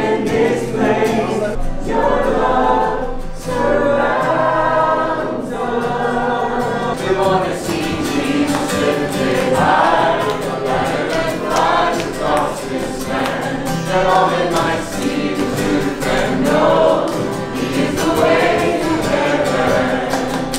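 A small group singing a gospel worship song together, accompanied by acoustic guitar, sounding out in a wooden hall.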